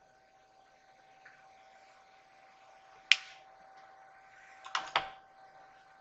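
Small clicks of makeup items being handled: one sharp click about three seconds in, then a quick cluster of clicks about a second and a half later, over a faint steady electrical whine.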